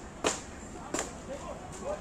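Paintball markers firing: two sharp pops about three-quarters of a second apart, then a few fainter ones, with faint distant shouting of players.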